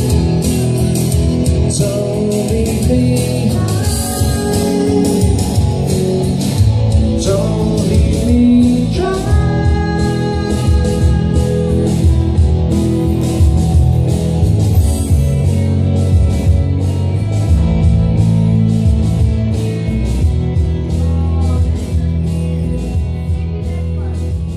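Live pop-rock music: an electric guitar and a Yamaha keyboard playing over a steady beat, with a man singing.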